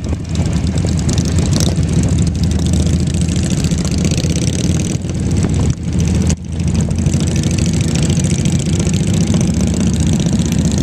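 A group of motorcycle engines running as the bikes cruise along together, a steady low rumble with a hiss of rushing air over it. The sound drops briefly twice around six seconds in.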